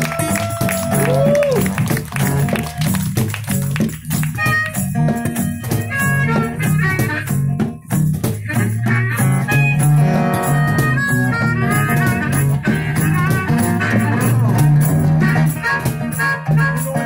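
Harmonica solo played into a handheld microphone over a strummed acoustic guitar, opening with a long held note that bends down, then running through quick changing phrases.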